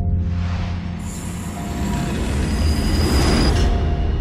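A train rushing past with a high, thin wheel squeal. Its noise swells over the first second and cuts off abruptly about half a second before the end, over a deep, pulsing music bed.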